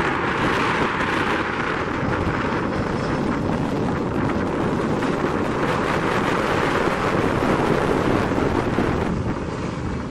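ATR-600-series turboprop airliner rolling along the runway: a steady rush of its Pratt & Whitney PW127 engines and propellers, mixed with wind on the microphone. The sound dips a little near the end.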